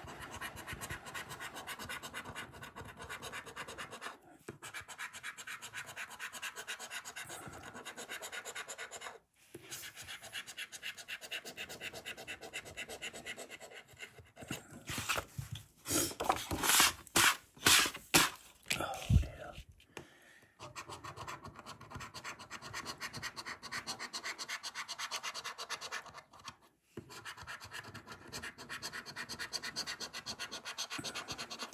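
A coin scratching the coating off a paper scratchcard in fast, rapid strokes, in several runs with short pauses between them. About halfway through come a few louder knocks and rustles as the card is handled and moved.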